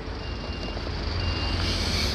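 Steady outdoor background noise with a low rumble, and a faint high-pitched beep that sounds on and off.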